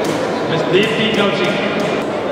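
Indistinct crowd chatter and overlapping voices in a large hall, with one voice standing out briefly about a second in.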